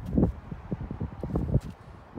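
Wind buffeting the microphone in uneven low gusts, with a few short thumps.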